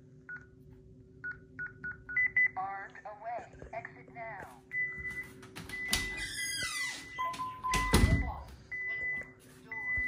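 Honeywell Lyric alarm panel arming away: a few short touchscreen key beeps, then the panel's recorded voice announcing the arming, then its exit-delay beep tone sounding on and off. Partway through, a door is opened and shut, with a heavy thump about eight seconds in as the loudest sound.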